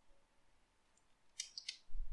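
A few quick, soft keyboard key clicks about a second and a half in, after a near-silent pause, as an XPath expression is typed.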